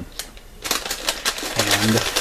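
Brown paper bag rustling and crinkling as it is handled and opened, a rapid run of crackles lasting about a second.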